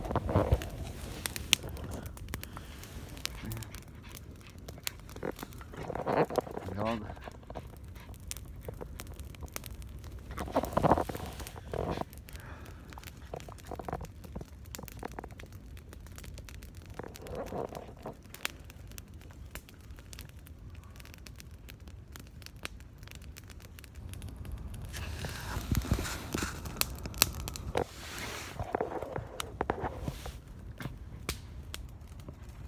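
Wood campfire crackling, with frequent small pops and snaps throughout.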